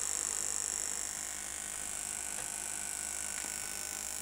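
A quiet steady electrical hum with a high-pitched hiss, and two faint clicks in the second half.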